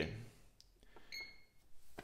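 A single short electronic beep from the Game Ready unit's control panel about a second in, a steady high tone that stops after a fraction of a second. Otherwise faint room tone.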